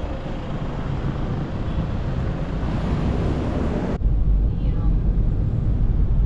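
Street traffic noise for about four seconds, then a sudden cut to a steady low rumble of a car's engine and road noise heard inside the cabin.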